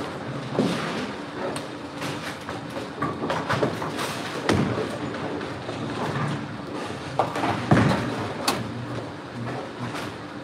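Bowling alley din: a steady low rumble of balls rolling on the lanes, with scattered knocks and clatters from balls and pins.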